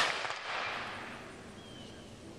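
Tail of a rifle volley fired by an honor guard, its echo fading away over about a second and a half.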